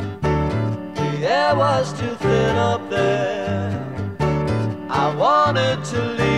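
Rock band recording playing an instrumental passage: a steady bass line and drums under a pitched lead line that swoops upward about a second in and again near the end.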